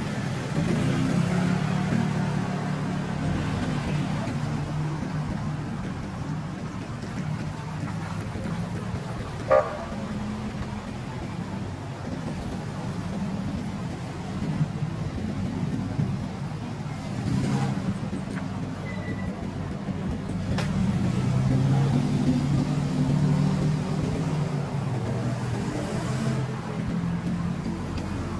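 City street traffic: car engines running with a steady low hum, and a short beep about nine and a half seconds in.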